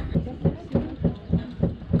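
Soba knife chopping through folded buckwheat noodle dough onto a wooden board, a steady run of dull knocks about three to four a second.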